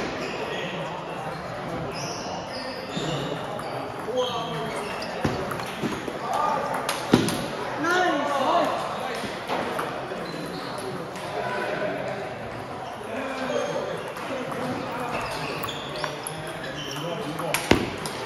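Table tennis rally: a celluloid-type ping-pong ball clicking sharply off paddles and the table at irregular intervals, with people's voices in the background.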